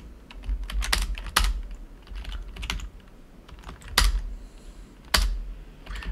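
Typing on a computer keyboard: irregular keystrokes in short runs, with a few louder single key strikes in the second half.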